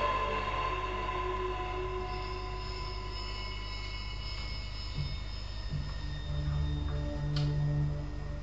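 Slow, drone-like improvised electronic music: layered sustained synthesizer tones, with low bass notes coming in about five seconds in. A single sharp click sounds near the end.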